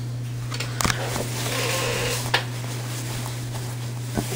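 A steady low hum with a couple of faint clicks; no telephone bell rings.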